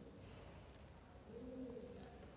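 Near-silent room tone with a faint, low bird call in the second half, a single note that rises and falls in pitch.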